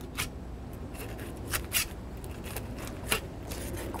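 Seven-inch dual-edge fillet knife cutting a snapper fillet away from the backbone and rib cage: several short, crisp scrapes and clicks as the blade passes over the bones.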